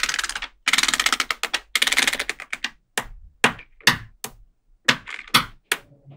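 Small metal magnet balls clicking together: a dense run of rapid tiny clicks for the first two and a half seconds, then separate sharp snaps a few times a second as balls are set into place.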